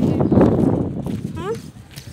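Wind buffeting the phone's microphone, a loud low rumble that peaks in the first second and then eases off, with a short spoken "Huh?" near the end.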